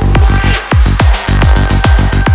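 Fast trance-style electronic dance music with a steady four-on-the-floor kick drum and bassline. The bass briefly drops out about half a second in and again just after a second.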